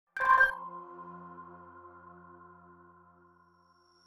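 A single electronic ping, like a sonar tone: several pitches strike together just after the start and ring on, fading away over about three seconds.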